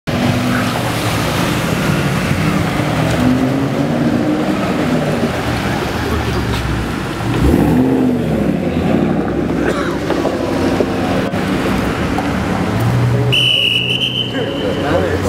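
Rally cars' engines running as they drive past on a city street, with one revving up and accelerating through a turn about halfway in. A high steady tone starts near the end.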